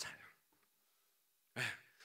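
A man's voice trailing off at the end of a word, a pause of near silence, then a short audible breath about a second and a half in before he speaks again.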